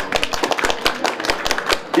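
Scattered handclaps from a small group of people, a quick irregular run of sharp claps.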